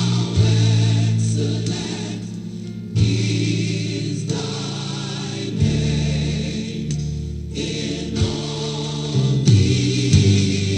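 Gospel choir singing sustained chords over instrumental accompaniment, the harmony changing every second or two.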